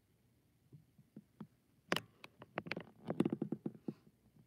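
A few light clicks, then a quick, irregular run of sharp clicks and taps through the second half, the sharpest one about two seconds in.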